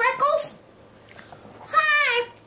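A domestic cat meowing: one clear meow near the end that falls in pitch.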